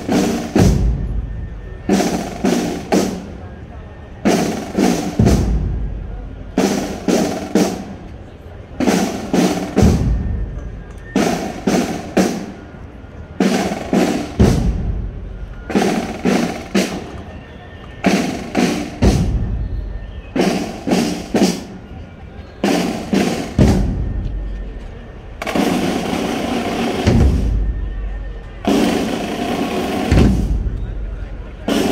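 Procession drums, snare drums beating a repeating cadence in short clusters of quick strokes, with a deep bass drum stroke every four or five seconds and a denser roll about three-quarters of the way through.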